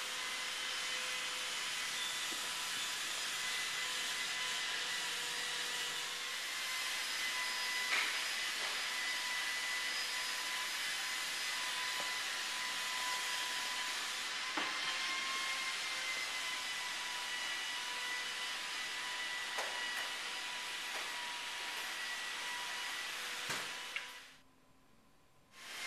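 A steady machine whine over a hiss, the sound of a motor-driven blower-type machine running without let-up, with a few faint knocks.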